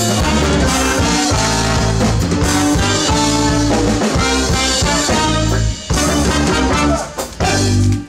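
Live band playing: trombone and saxophone over drum kit, with accordion and guitar. The music breaks off briefly twice near the end.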